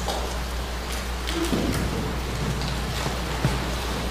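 Audience applauding: a steady patter of many hands clapping together.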